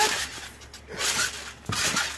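Bouncing on a trampoline: two short rustling, whooshing bursts about a second apart, the second with a thump as a jumper lands on the mat.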